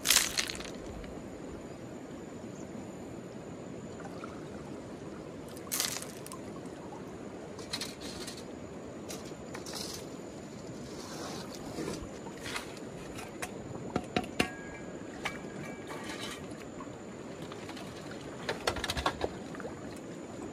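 Shallow river water running steadily over stones, broken by splashes and the clack of rocks as river stones are tossed aside and sifted by hand. The loudest splash comes right at the start, with a quick run of clacks about fourteen seconds in.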